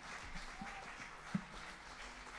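Faint audience noise in a small club after a song: scattered, distant clapping, with one soft knock about a second and a half in.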